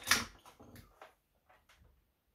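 Guitar cables and a small metal box being handled on a bench: a sharp jack-plug click right at the start, then a few faint clicks and knocks.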